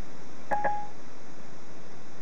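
A single short electronic beep about half a second in, a click followed by a steady tone lasting about a third of a second, played through the Ford Sync car audio over a steady hiss. It is Siri's tone marking that it has stopped listening and is processing the spoken request.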